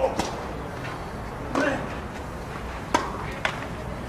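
Tennis ball struck by rackets on a clay court: a serve followed by a short rally of sharp hits spaced about a second or more apart, the loudest about three seconds in. A short grunt goes with one hit.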